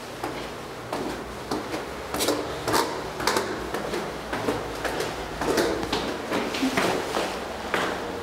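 Footsteps going down an indoor staircase, a series of short knocks at about two steps a second, with a low rumble underneath.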